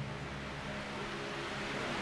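Room tone: a faint, steady low hum with hiss.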